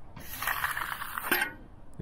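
Steel hand edger scraping along the edge of a freshly finished concrete slab in one stroke of about a second, ending in a sharp tick as it comes off.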